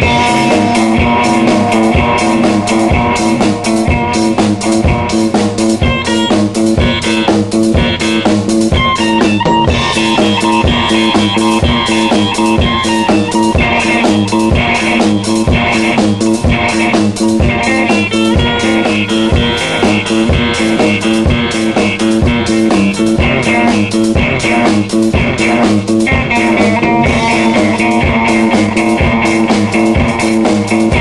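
Instrumental psychedelic rock: guitar over a drum kit keeping a steady, busy beat, with bass underneath.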